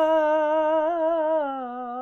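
A man singing Arabic religious praise of the Prophet (madih nabawi) solo, drawing out one long note with a wavering vibrato that steps down to a lower pitch about one and a half seconds in.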